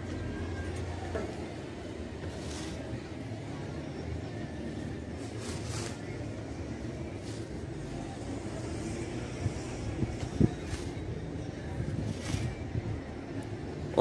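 Outdoor background noise: a steady low rumble of distant traffic, with a couple of light knocks about three-quarters of the way through.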